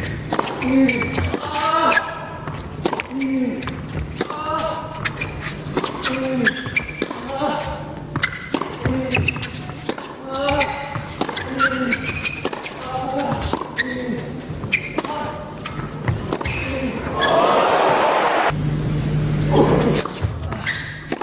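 A fast tennis rally on an indoor hard court: repeated sharp racket strikes and ball bounces echoing in the hall, with a short vocal grunt on many of the shots. Near the end the crowd breaks into applause.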